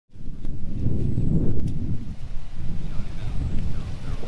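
Wind buffeting the microphone outdoors: a loud, uneven low rumble, with a couple of faint clicks.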